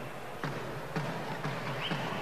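A handball bouncing a couple of times on a wooden court, with short thuds over a steady low crowd murmur in a sports hall.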